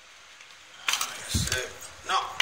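Thin cardboard box insert being handled and unfolded by hand. It is quiet at first, then about a second in there is a sharp click, followed by scraping and rustling of the card with a low thump.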